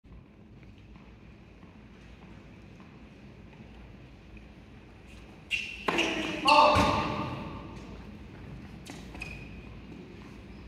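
Tennis ball struck by rackets in an indoor arena, heard from the stands: a few sharp hits a little past halfway, the loudest with a short voiced cry, then two lighter knocks near the end, over a low murmur of the hall.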